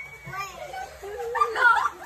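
Girls' and children's voices chattering and calling out excitedly, loudest a little past the middle.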